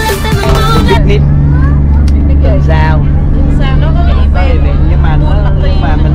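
A water bus's engine droning steadily in the passenger cabin, with people talking over it. Background music cuts off about a second in.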